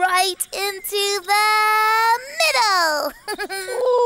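A character's voice vocalising without words: short sung-like cries, then one long held note, then a gliding change of pitch near the end.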